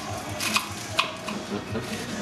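Kitchen handling noises on a wooden chopping board and counter as herbs are prepared, with two sharp clicks about half a second and a second in.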